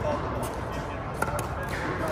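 A few sharp pops of a pickleball being struck by paddles and bouncing on the court during a rally, the loudest just past a second in, over a murmur of background voices.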